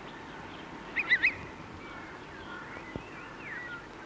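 A bird calling: a quick burst of three loud, squeaky notes about a second in, then a few fainter chirps and slurred notes, over a steady film-soundtrack hiss.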